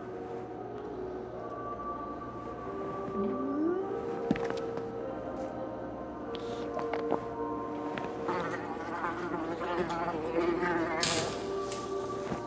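Background film music of sustained held tones, with sound effects over it: a short rising tone about three seconds in, a single click a second later, and a wavering buzz in the second half that ends in a brief noisy burst.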